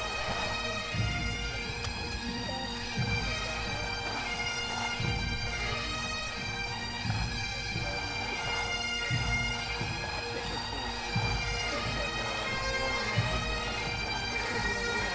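Background music: bagpipes over steady drones, with a low beat about every two seconds.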